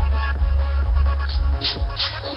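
Electronic dance music from a live producer set: a heavy sustained bass line with bright percussive hits above it, the bass dropping out briefly about a second and a half in.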